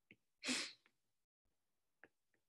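A single short, sharp burst of breath, like a stifled sneeze, about half a second in. Faint taps of a stylus on a tablet screen come just before and after it.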